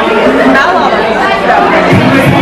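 Diners' chatter filling a busy restaurant dining room: many overlapping voices, none standing out.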